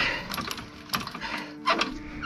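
Hand crank turning an RV's scissor-type parking jack down, clicking and clinking irregularly, with a louder knock near the end.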